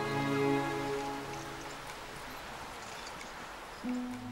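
Soft background music of sustained, held chords that fade out about a second and a half in, leaving a faint even hiss. A new held chord begins near the end.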